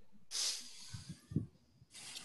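A breathy hiss on a video-call microphone lasting about a second and cutting off sharply, with a couple of short low murmurs near its end. A second burst of hiss starts at the very end.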